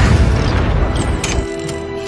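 A deep boom sound effect dying away, loudest at the start, with musical notes starting about a second in.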